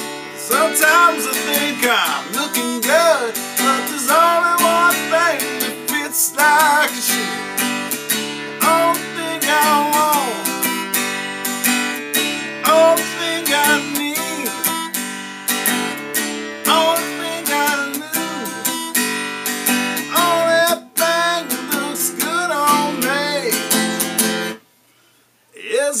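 Acoustic guitar strummed in a steady song rhythm with a man's singing voice over it. Near the end the guitar and voice stop dead for about a second, then start again.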